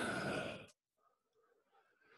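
A man's breath, an exhale that fades out within the first second, followed by near silence.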